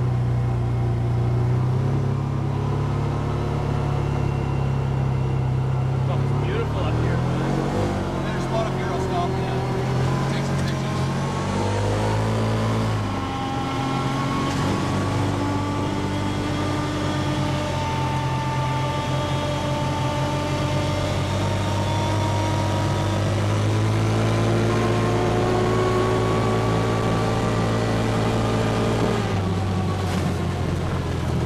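Side-by-side UTV engine running under way on a gravel track, with tyre and road noise. The engine note sags and climbs again between about seven and thirteen seconds in, then holds steady.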